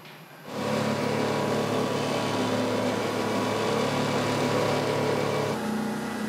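Motor patrol boat under way at speed: a steady engine hum under the rush of water and wind. Near the end it drops slightly in level and sounds more enclosed, as heard from inside the boat's cabin.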